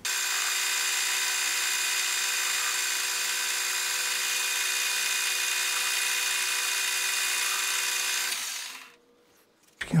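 Metal lathe running steadily under power with a fixed whine of several tones while a chamfer is turned on a steel workpiece; the sound fades away near the end as the spindle stops.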